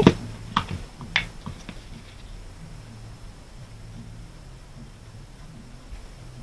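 Folded paper card and crafting supplies being handled on a cutting mat: a few light clicks in the first second and a half, then quiet room tone with a faint low hum.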